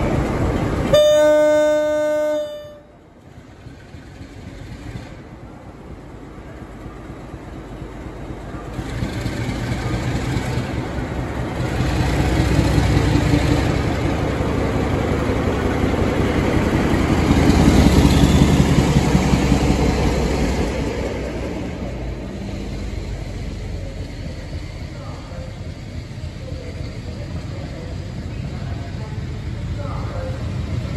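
Class 47 diesel locomotive sounding its horn once, a blast of about a second and a half near the start. Then its Sulzer diesel engine is heard working as it hauls the train past, growing louder and loudest as the locomotive goes by, followed by the lower rumble of the coaches rolling past.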